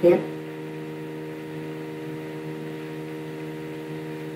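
Steady electrical mains hum with several evenly spaced pitched overtones, unchanging throughout.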